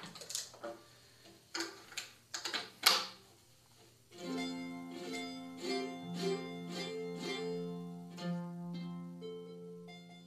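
A few clicks and knocks of handling over the first four seconds, then an old mandolin, detuned by a full step, picked note by note from about four seconds in, two to three plucks a second, the strings ringing on.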